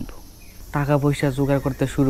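A man talking in Bengali, starting after a brief pause near the start. Under his voice runs a faint, steady, high-pitched insect drone.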